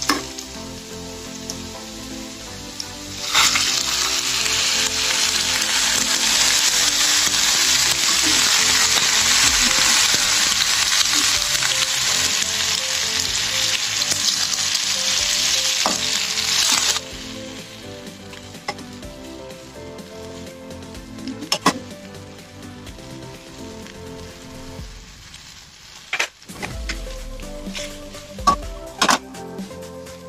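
Vegetables stir-frying in a hot wok: a loud, steady sizzle starts about three seconds in and cuts off abruptly past the middle. After that a quieter sizzle goes on, with a few sharp scrapes and clicks of a metal spatula against the pan.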